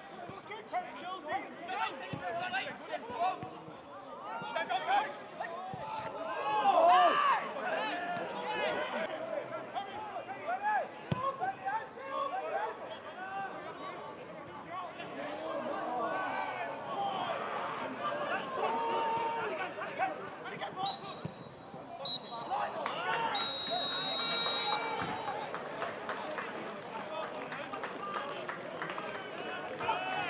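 Players and a small crowd shouting during a floodlit football match, with an occasional thud of the ball. About 21 seconds in a referee's whistle blows three times, two short blasts then a long one: the full-time whistle.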